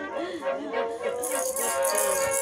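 Background music with a steady tune and a toddler's voice. From about a second in, a handheld toy rattle is shaken quickly.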